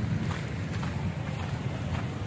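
Wind buffeting the phone microphone as it is carried along, a steady low rumble with a fluttering, uneven edge.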